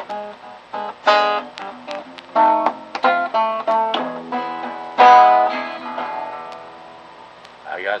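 Archtop acoustic guitar playing a picked blues lick of single notes and chords. About five seconds in, a last chord is left to ring and fade away, and singing comes in at the very end.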